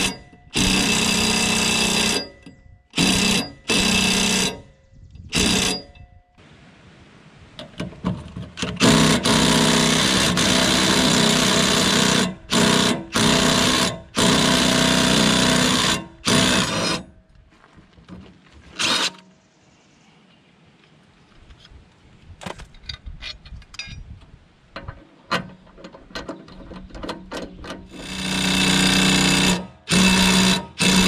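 Cordless DeWalt impact wrench hammering on a mower blade's 19 mm bolt in repeated bursts of a second or two, with one longer run in the middle and quieter clicking in between; the seized bolt is not breaking loose.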